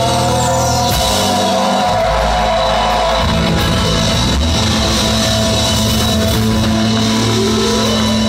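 Punk rock band playing live and loud, with distorted electric guitars and a drum kit.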